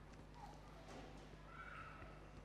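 Near silence: room tone with a low, steady electrical hum and a few faint, indistinct sounds.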